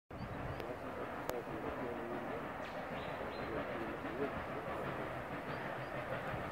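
Steady low rumble of a train that is not yet in sight, with distant voices murmuring and a few short bird chirps.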